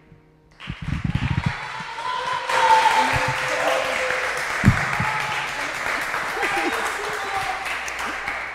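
Studio audience applauding and cheering after a brief silence, beginning about half a second in, with shouts and whoops over the clapping.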